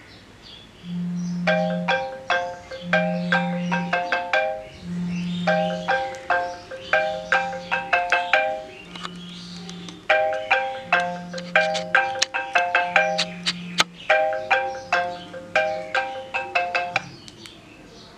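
An iPhone alarm plays a marimba-style ringtone: a short repeating melody of quick mallet notes that starts about a second in and stops about a second before the end, when the alarm is silenced. Under the melody, the phone's vibration motor buzzes in low pulses about a second long, roughly every two seconds.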